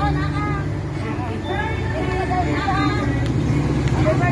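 Several people talking at once over a steady low rumble of road traffic.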